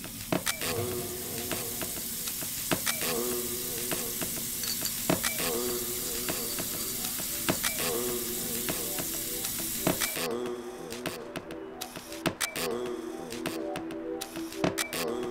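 Water running from a bathroom sink tap, with a key rinsed under the stream, as a steady hiss that stops about ten seconds in. Music with a short repeating phrase plays underneath.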